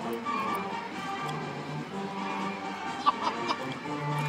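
Military-style marching band playing a march, its brass holding long sustained notes. A few sharp clicks sound close by about three seconds in.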